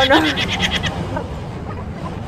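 A woman laughing in a short run of quick pulses that dies away about a second in, leaving a steady low outdoor background rumble.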